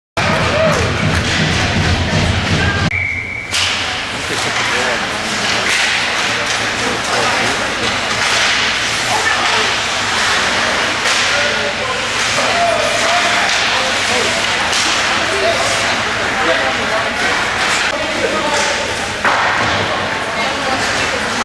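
Ice hockey being played in an arena rink: skates scraping on the ice and sharp clacks and thuds of sticks, puck and boards, with voices calling out in the hall.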